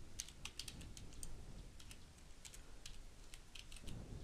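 Computer keyboard being typed on: faint keystrokes in short quick runs with gaps between them.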